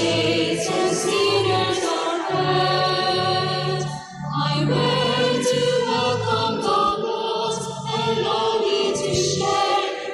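Choir singing the entrance hymn of the Mass, with sustained low notes under the voices and a brief pause for breath about four seconds in.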